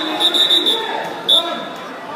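A referee's whistle blown in one long shrill blast lasting about a second and a half, then a short second toot, over faint crowd chatter in a gym. It stops the action in a wrestling bout.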